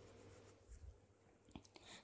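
Near silence: faint room tone with a few soft, brief clicks in the second half.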